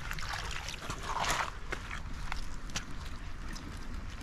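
Rustling and scraping as a trapped beaver in its foothold trap is handled on wet gravel, with a short louder scuffle a little over a second in and a few light clicks after it. Water trickles faintly underneath.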